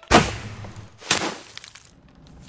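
Two sudden swooshing sound effects, about a second apart, each falling in pitch as it fades.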